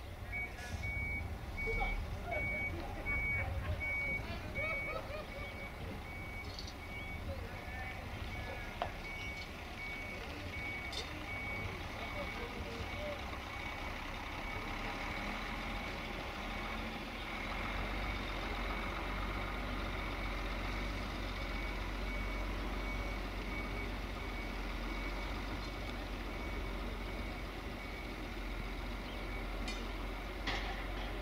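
Reversing alarm of an IVECO tanker truck beeping in an even, repeating single high tone over the low rumble of its diesel engine, which grows louder about halfway through as the truck manoeuvres.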